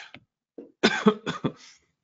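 A man coughing: a small cough at the very start, then a quick run of about four coughs from about a second in.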